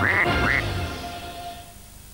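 Two short cartoon duck quacks from the WC Duck mascot, over closing jingle music that then fades away.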